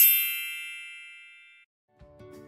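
A bell-like ding sound effect: a brief rising shimmer goes into a single bright ring that fades away over about a second and a half.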